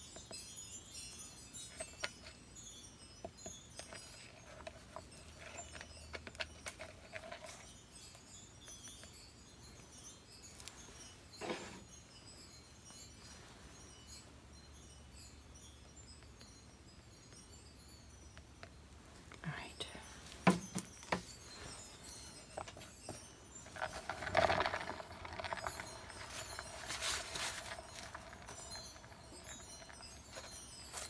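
Faint, intermittent scraping and light tapping of a plastic spatula working thick wet acrylic paint around the edges of a small canvas. There are a few sharper knocks about twenty seconds in and a louder stretch of handling about twenty-four seconds in.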